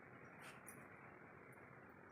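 Near silence: faint room tone, with one faint short click about half a second in.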